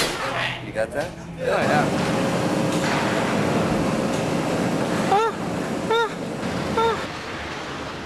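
A loud, steady noise with a person's voice over it, calling out three short rising-and-falling shouts in the second half.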